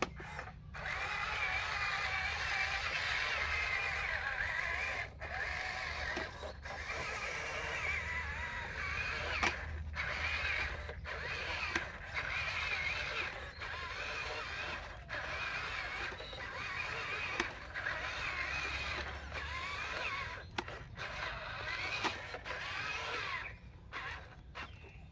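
Small electric drive motors and plastic gearboxes of radio-controlled construction toys whining as they drive, the pitch wavering with the throttle and cutting out briefly every few seconds.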